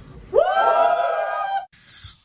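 A loud cheering whoop that rises in pitch and is then held for over a second. Near the end comes a short whoosh.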